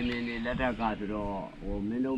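Speech only: a person talking, with a short pause about three-quarters of the way through.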